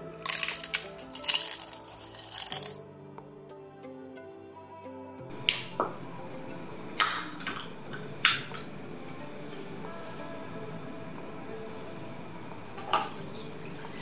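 Soft background music with three loud bursts of noise in the first three seconds. The music then stops and an aluminium soft-drink can is handled beside a glass of ice, giving a few sharp clicks, one of them about eight seconds in as the ring-pull is opened.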